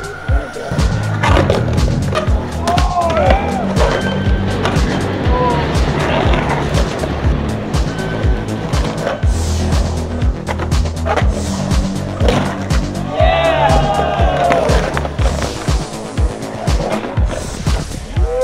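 Skateboard wheels rolling on the concrete of an empty pool, with trucks grinding the pool coping and repeated sharp clacks and knocks of the board, mixed with background music.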